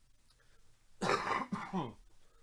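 A person clearing their throat, two short rasping bursts in quick succession about a second in.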